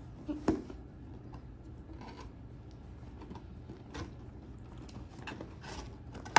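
Tape being peeled off a cardboard Funko Pop box and the box flap opened: scattered small scrapes, crinkles and clicks of tape, cardboard and the plastic window insert, with a sharper click about half a second in.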